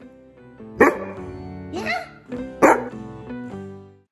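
A black Labrador barks twice, about two seconds apart, over background music. The barks are the loudest sounds, with a shorter call between them.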